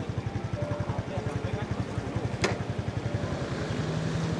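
An engine idling with an even, rapid low throb. A single sharp click comes about two and a half seconds in, and a steady low hum joins near the end.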